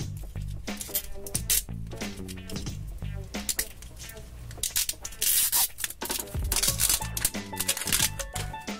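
The outer wrapper of an L.O.L. Surprise ball being peeled and torn open, crinkling, with the loudest tearing about five to six seconds in, over background music.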